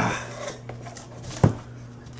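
Hands rummaging inside a cardboard shipping box and pulling out a paper slip, with faint rustling and one sharp knock about one and a half seconds in.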